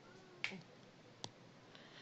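Two short, sharp clicks, about a second apart, over faint room hiss.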